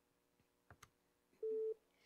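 Desk telephone: a couple of faint button clicks, then a single short steady beep as the next call-in line is picked up.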